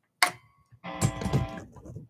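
Plugged-in electric guitar: a chord is struck about a second in and rings for under a second before dying away. It is played as a check of the newly replaced volume pot, which now works.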